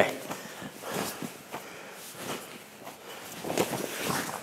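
Quiet rustling of cotton karate uniforms and bare feet shuffling on the mat as two people move through a partner drill, with a few slightly louder brushes about a second in and near the end.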